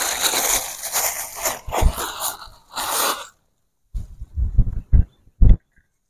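Dry leaf litter and cassava debris crunching and rustling as harvested cassava roots are handled, for about three seconds. A few dull thumps follow near the end.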